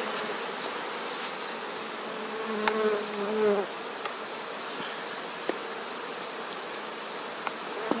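Buckfast honeybees humming steadily over open hive frames as a package is hived, with a louder buzz for about a second near the middle from a bee close by. The hum is low and even, the sound of a calm, quiet colony. A few light clicks come from the plastic package lid being handled.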